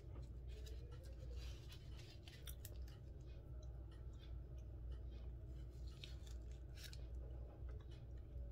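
Faint, scattered wet clicks and smacks of someone chewing a sticky mochi, over a steady low hum.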